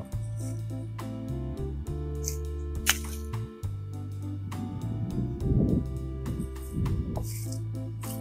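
Background music: held bass notes with a light, regular beat, and one sharp click about three seconds in.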